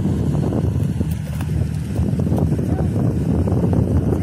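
Passenger excursion boat's engine and propeller running with a loud, steady low rumble as the boat manoeuvres close to the bank, with a few short calls over it.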